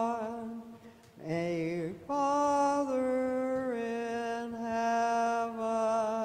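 Byzantine liturgical chant sung in long held notes with a slow, plain melody. The singing breaks off briefly about one and two seconds in, then the pitch steps down over the held notes in the second half.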